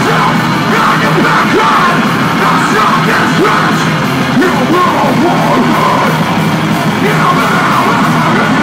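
Metalcore band playing live, loud and dense: heavily distorted guitars and drums under screamed vocals.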